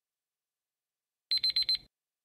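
Countdown timer's time-up alarm: four quick, high-pitched electronic beeps in about half a second, near the end.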